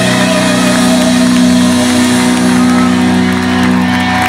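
Live rock band holding a sustained closing chord on electric guitars, bass and drums, the pitch steady throughout, with a crowd cheering and whooping over it.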